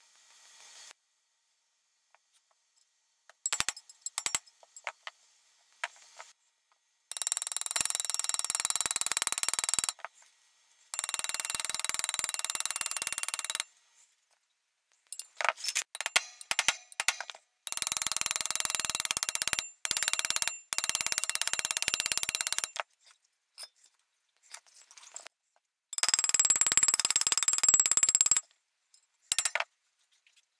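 Four bursts of loud, even hissing, each two to five seconds long, starting and stopping abruptly. Scattered light clicks and clinks of metal being handled fall between them.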